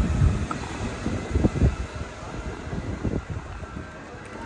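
City street noise: a steady low rumble with wind buffeting the microphone, and a few soft low thumps about one and a half and three seconds in.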